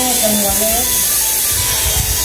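A steady high-pitched buzzing hiss, with voices talking faintly beneath it.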